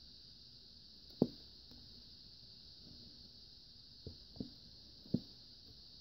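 Four faint, soft thumps: one about a second in, then three close together between four and five seconds in, over a steady faint hiss.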